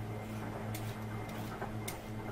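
Vegetable peeler scraping peel off a raw potato in a few short strokes, over a steady low hum.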